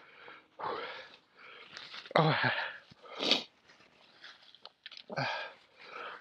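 A man's heavy, wheezy breaths and sniffs through a chili-burned mouth and nose: several short breathy exhales about a second apart, one sharper hiss about three seconds in, and a blow into a tissue near the end. It is a reaction to the heat of a very hot chili.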